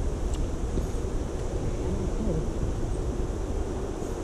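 Steady low rumble of wind buffeting an outdoor microphone, with a faint tick about a third of a second in.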